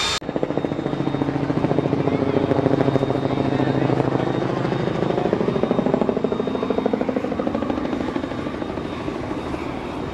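Helicopter passing over, its rotor beating rapidly. It builds over the first few seconds and slowly fades away over the last few.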